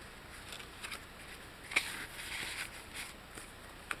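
Tea-dyed paper rustling and sliding as cards and an envelope are handled in a handmade journal. A sharp tick a little under two seconds in is the loudest sound, with a brief crinkle after it and another tick near the end.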